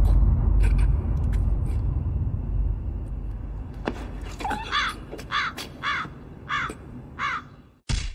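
A deep low rumble fades away over the first few seconds. Then a crow caws about five times at an even pace.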